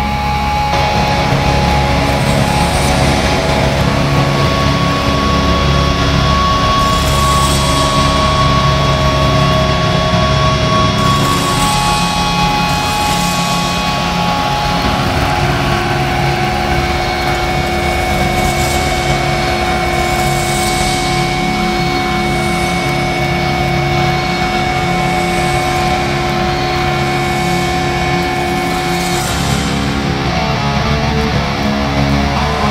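A droning musical interlude of long held notes that shift in pitch a few times, with soft hissing swells every couple of seconds, leading into a clean guitar opening.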